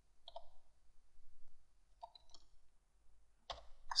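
A handful of faint, separate keystrokes on a computer keyboard, irregularly spaced, with a louder one near the end.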